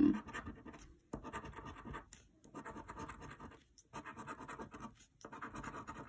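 A coin scratching the coating off a scratch-off lottery ticket, in about five bouts of rapid back-and-forth scraping, each about a second long with short pauses between them.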